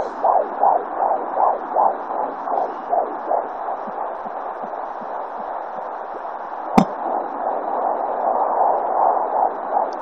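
Home fetal Doppler picking up blood flow in the umbilical cord: a fast, rhythmic pulsing whoosh with a hiss, like a little hissing sound. The pulses fade into a steady hiss midway as the probe is moved, a sharp knock from the probe sounds about seven seconds in, and then the pulsing returns.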